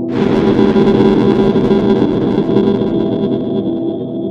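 Cinematic logo-intro music: a held low drone struck by a sudden, distorted crash right at the start. The crash fades over about three seconds and the drone carries on beneath it.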